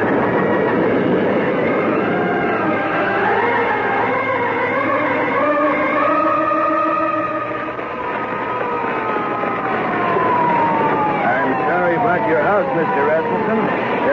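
Radio-drama sound effects of a house fire, with sirens wailing up and down over a rushing noise. Over the last few seconds the sirens wind down in long falling glides.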